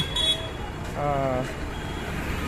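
Busy city street traffic running steadily, with a short high beep at the very start and a person's voice briefly about a second in.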